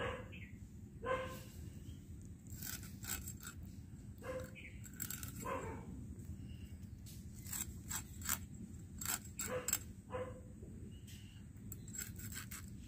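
Small kholshe fish being scaled against a boti blade: quiet scraping and many small clicks of scales and fins on the blade. A few short animal calls, like a dog's barks, come through in the background.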